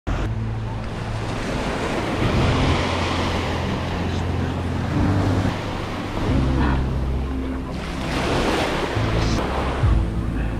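Surf washing onto a sandy beach, with wind noise on the microphone, over a low drone that shifts in pitch every second or two.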